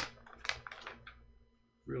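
Pencil and paper at a drawing desk: a few short scratchy sounds in the first second as sheets of animation paper are flipped and sketched on, fading away after that.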